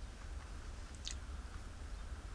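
A person chewing food quietly, with a faint soft click about a second in, over a steady low hum.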